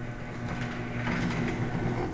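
Chain-drive garage door opener running as the door goes up: a steady motor hum with mechanical chain noise, stopping near the end.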